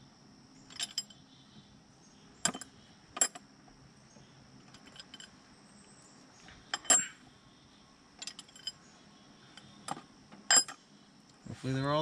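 Loose steel valve-train parts from a Cummins 5.9 diesel head clinking and knocking as they are handled, about eight sharp metallic clinks with brief ringing, spaced irregularly a second or more apart.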